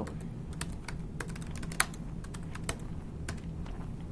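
Typing on a computer keyboard: an irregular run of key clicks, one of them louder a little under two seconds in.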